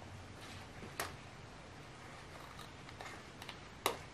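Scissors cutting through wire-edged fabric ribbon: a few faint clicks, one about a second in and a sharper one near the end.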